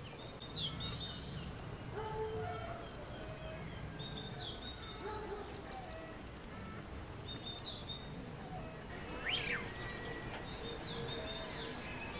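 Songbirds singing outdoors: one bird repeats a short, high chirped phrase about every three to four seconds, while other birds give lower whistled notes, over a steady background of outdoor noise.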